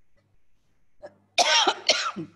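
An elderly woman coughing twice in quick succession, about a second and a half in, with her fist to her mouth.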